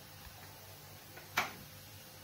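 Mostly quiet, with one short, sharp click about one and a half seconds in.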